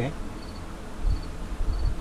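A faint, high, short chirp repeating about every two-thirds of a second over room tone, with a low rumble about halfway through.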